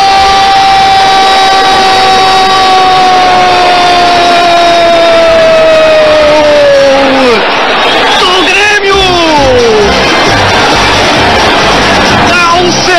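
A Brazilian TV football commentator's drawn-out goal cry: one long held note for about seven seconds that sags slightly in pitch and then breaks off. It is followed by a few shorter shouts that fall in pitch, over steady crowd noise.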